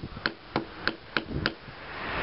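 Blade of a Cherusker Anduranz folding knife biting into a wooden stick in short carving strokes, shaving off curls. About five sharp cuts come about three a second.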